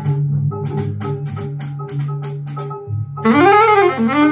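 Jazz record played back over large horn loudspeakers: vibraphone notes struck in a quick run over a low bass line. About three seconds in, an alto saxophone comes in loud with a note that bends up and falls back.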